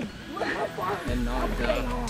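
People's voices, laughing and talking.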